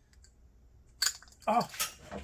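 A small metal spring snapping loose from the part being reassembled and flying off: a single sharp snap about a second in, after faint clicks of fingers working the part.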